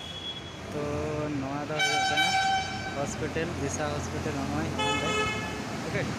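Vehicle horns sounding twice in road traffic, each a steady blast held about a second: the first, and loudest, about two seconds in, the second near the end.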